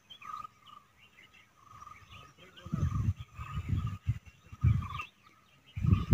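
Birds chirping and calling in short, high notes, with several low rumbles in the second half.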